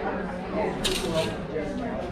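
Rapier blades clashing and scraping together in a short metallic burst about a second in, over spectator chatter.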